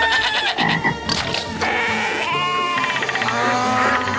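A loud din of farm animal calls, with wavering goat and sheep bleats standing out in the second half, over music.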